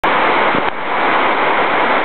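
A large waterfall rushing steadily.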